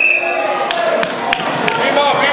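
A basketball bouncing on a hardwood gym floor: a handful of sharp, separate bounces over the steady chatter and shouts of spectators. A short, steady high-pitched tone sounds right at the start.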